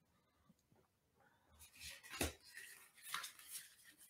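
Faint taps and rustles of oracle cards being handled and laid on a pile, the clearest tap a little after two seconds in, after a stretch of near silence.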